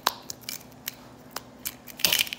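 Sharp plastic clicks and taps from a plastic octopus pop-it fidget toy being handled: one loud click right at the start, then several fainter ones scattered through the rest.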